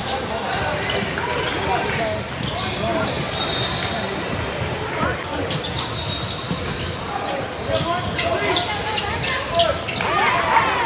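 Indoor basketball game: the ball bouncing and hitting the floor and rim in a run of short knocks, thickest in the second half, under players and onlookers calling out and talking.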